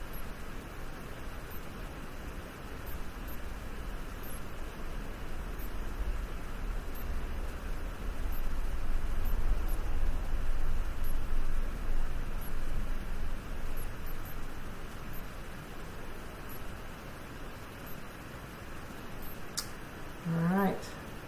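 Steady room noise with a low rumble that grows louder for a few seconds midway, and a single sharp click near the end.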